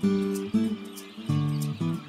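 Background music: an acoustic guitar strumming a handful of chords.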